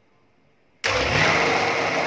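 Electric mixer grinder switched on about a second in, running loud and steady with a low hum that rises in pitch as the motor comes up to speed, grinding cooked sago pearls into a paste.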